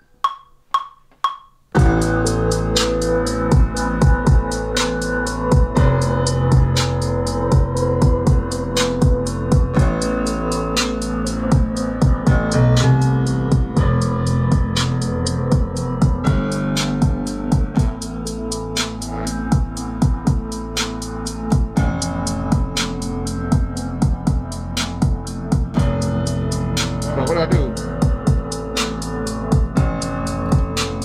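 Trap beat playing back from an Ableton Push 3, with heavy bass and drum-machine hits at a steady tempo. It starts about two seconds in after four short ticks.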